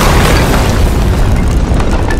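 A loud boom and rumbling crash sound effect, with many small cracks of breaking stone and debris scattered through it, slowly dying away.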